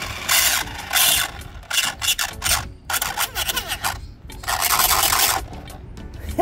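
Toy-grade 1/8-scale RC car's drivetrain grinding and rasping in about five short bursts as it is driven. The wrong-pitch pinion gear (32 pitch, 15 tooth) does not mesh with the spur gear, so the gears grind.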